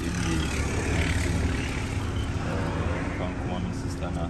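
Steady low rumble of a car, heard from inside its cabin, with a man's voice speaking a few words near the start and again past the middle.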